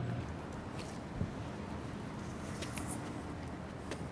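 Steady low background noise with a few faint clicks and knocks scattered through it.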